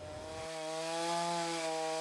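Chainsaw cutting into an old, weathered wooden log, its engine held at a steady high pitch with only a slight rise and fall.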